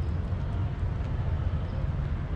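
Steady low outdoor rumble with a faint hiss above it, unbroken and without distinct events.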